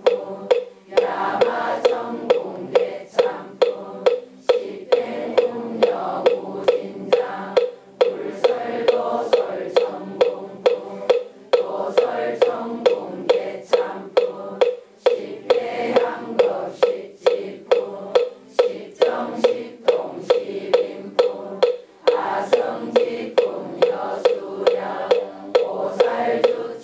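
A moktak (Korean Buddhist wooden fish) struck in a steady beat, about two strokes a second, keeping time for a congregation chanting together in unison.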